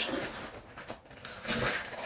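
Quiet handling sounds as a cheer bow is fastened onto the top of a cheer bag: light rustling, with a short louder patch of faint clicks about one and a half seconds in.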